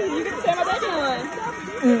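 People chatting close to the microphone: speech only.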